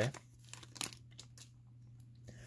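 Faint crinkling of a foil trading-card booster-pack wrapper and cards being handled as the cards are slid out, with one sharper rustle a little under a second in.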